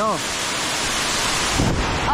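A waterfall's cascade of falling water makes a loud, steady rushing noise close to the microphone. This is the second, stronger fall of the waterfall.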